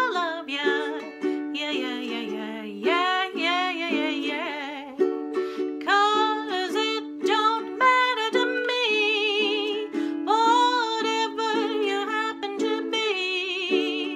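A woman singing, her held notes wavering with vibrato, to her own strummed ukulele chords.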